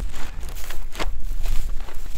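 Footsteps crunching and rustling through dry leaves and dead brush, with a sharper crackle about a second in and a low rumble underneath.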